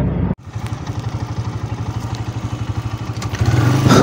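Small motorcycle engine running with a rapid, even putter, heard from the bike itself. It grows louder about three and a half seconds in as the throttle opens. The sound starts just after a sudden cut in the audio.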